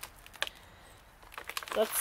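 A few light clicks and taps from a wooden board being handled, with quiet stretches between them.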